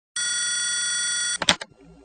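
A telephone ringing once, a steady electronic ring about a second long, then a click as the receiver is picked up.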